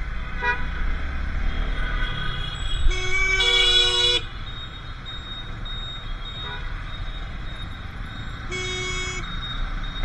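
Vehicle horns honking in dense motorcycle and car traffic: a horn blast of about a second starting about three seconds in, a shorter blast near the end and a brief toot at the start. Under the horns runs a steady hum of engines and road noise.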